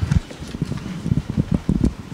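A run of soft, irregular low knocks and thumps: handling noise at a lectern close to its microphone.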